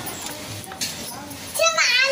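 A small child's high-pitched voice calling out near the end, over the quieter sounds of children playing.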